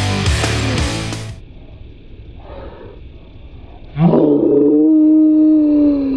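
Rock music that cuts off about a second in, then a girl's long, loud yell starting about four seconds in, held for about two seconds and falling in pitch as it ends.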